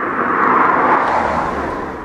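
A vehicle passing by: a rush of noise with a low rumble underneath that swells about half a second in and fades toward the end.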